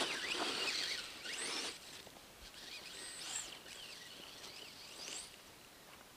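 Brushless electric motor of an RC car whining as it is throttled, with quick high rises and falls in pitch, picked up by a camera mounted on the car. A loud rush of noise fills the first second and a half as the car ploughs through snow.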